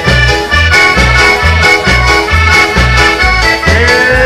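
Accordion-led dance band playing an up-tempo regional dance tune, with a bass line pulsing steadily on the beat.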